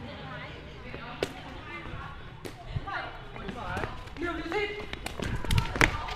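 Sharp knocks of a shuttlecock (đá cầu) being kicked back and forth in a rally, single strikes about a second and two and a half seconds in, then a quick cluster of strikes near the end.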